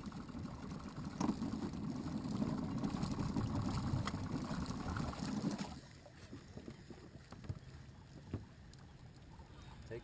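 A fishing boat's outboard motor, throttled right down, runs with a rough, uneven low sound for the first half. It cuts off suddenly about halfway through, as the boat is stopped over a marked fish, leaving a quiet drift with a few light knocks.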